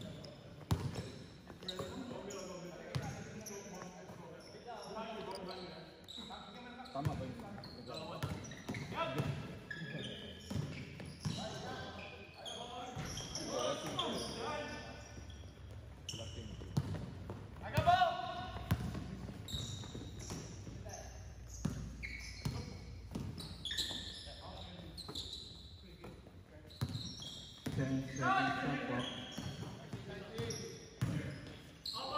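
Basketball being dribbled and bounced on an indoor court floor, irregular sharp thuds throughout, echoing in a large sports hall, with players shouting in the background.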